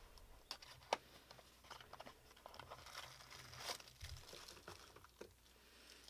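Faint handling of a small cardboard box and a cellophane wrapper: scattered light clicks and crinkles, with a sharper click about a second in.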